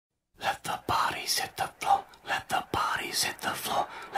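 A person whispering a quick run of short, hushed syllables, with a few sharp clicks among them.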